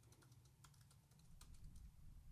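Faint typing on a computer keyboard: a handful of scattered key clicks as a short command is typed, over a low steady hum.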